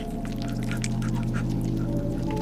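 Horror-film sound design: a steady low drone with overtones, with scattered faint ticks over it.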